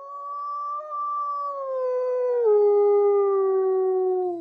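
Gray wolf giving one long howl: it rises in, holds, drops to a lower pitch about halfway through, and slides down at the end.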